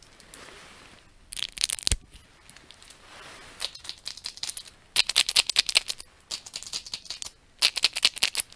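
Close-up crackling and tapping from a hand working right at the microphone, in irregular clusters of sharp clicks, densest about halfway through.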